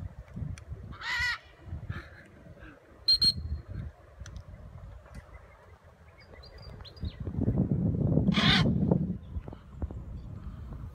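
Harsh macaw squawks: one about a second in, a short sharp call around three seconds, and a longer, louder squawk near the end over a low rumble.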